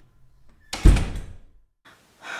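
A single heavy thump about a second in, sudden and deep, dying away over about half a second.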